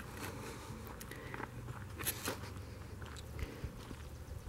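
Faint footsteps crunching on wood-chip mulch, with a few sharper crunches about two seconds in, over a steady low rumble.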